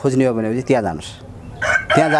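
A rooster crowing behind a man's speech, the crow starting near the end as one long held call.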